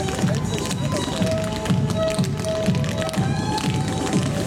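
Upbeat music with a steady beat and held melody notes, with many quick sharp taps over it from dancers' shoes striking the stage.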